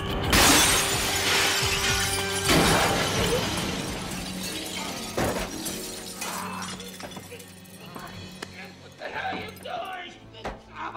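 Large glass window shattering as bodies crash through it, loudest just after the start and trailing off over about two seconds, followed by a second crash about two and a half seconds in and a sharp impact about five seconds in, over film score music.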